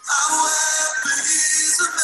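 Recorded worship song with voices singing over a full band; a loud sung phrase comes in at once and holds.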